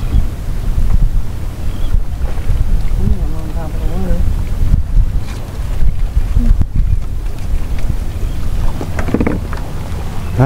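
Wind buffeting the microphone: a low rumble that rises and falls unevenly, with faint voices in the background.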